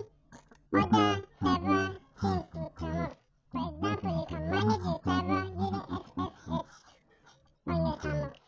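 A person's voice talking in short phrases with brief pauses, the words unclear.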